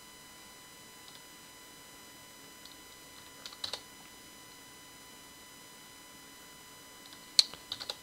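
Computer keyboard keystrokes: a few scattered taps, then a quick cluster of louder clicks about seven seconds in. Under them runs a faint steady electrical hum.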